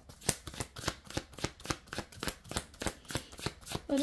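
A deck of tarot cards being shuffled by hand, a quick, even run of card clicks about five a second.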